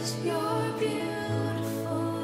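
Slow worship song: soft held instrumental chords over a bass note that shifts down about a second in, with a male voice singing softly.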